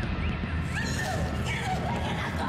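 Loud commotion: a dense rumbling noise with short, high cries rising and falling over it.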